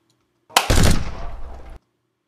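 A stock machine-gun burst sound effect: a quick three-round burst starting about half a second in, with a fading tail that cuts off abruptly.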